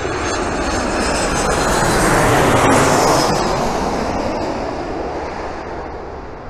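Boeing 737 jet airliner flying low overhead: engine noise swells to a peak about halfway through and then fades, with a high whine that falls in pitch as the plane passes.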